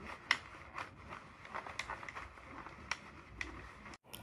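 Plastic Sentro circular knitting machine being cranked by hand: faint, irregular light clicks of the plastic mechanism, roughly two a second.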